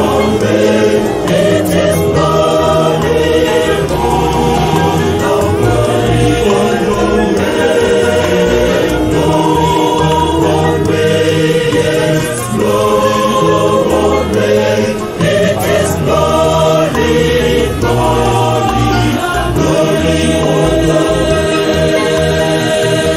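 A choir singing a gospel song, many voices together, with a steady low bass part beneath.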